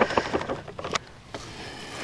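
Granular lawn fertilizer pouring from a paper bag into a plastic spreader hopper: a dense rattle of small pellet clicks for about the first second, then dying away to a faint steady hiss.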